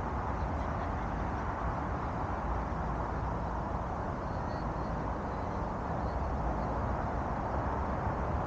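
Wind blowing across the microphone: a steady rushing noise with a low, fluttering rumble underneath.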